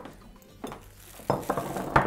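A few separate light knocks and clinks of kitchen utensils and dishes during work at a countertop, the loudest near the end.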